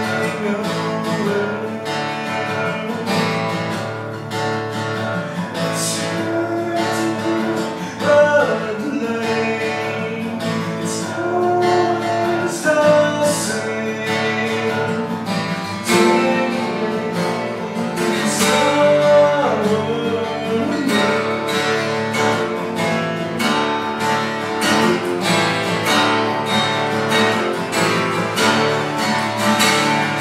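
Two acoustic guitars, a twelve-string and a six-string, played together in an acoustic song, with singing in places.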